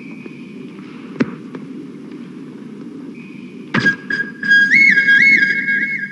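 Film background music: a low ambient drone with a sharp hit about a second in. About two-thirds of the way through, a louder hit brings in a high, whistle-like electronic lead that flips back and forth between two notes.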